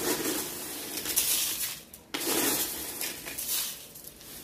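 Dry breakfast cereal poured from its container into a bowl, rattling and rustling in two pours split by a short pause about two seconds in.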